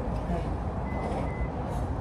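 Two short, high electronic beeps from a vehicle's warning beeper, about a second in, over a steady low engine rumble.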